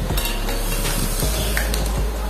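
A steady hiss with a few light clicks and taps from a metal motorcycle carburetor body being handled and turned over.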